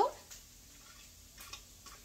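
Mostly quiet room tone with a few faint, short clicks.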